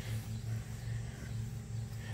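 Microfiber cloth faintly rubbing across waxed car paint, wiping in a spray sealant, over a steady low hum.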